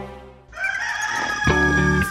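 Rooster crowing: one long call starting about half a second in. Music comes in about a second and a half in.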